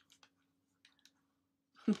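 A quiet room with a handful of faint, short clicks and a faint steady low hum. A woman starts to laugh near the end.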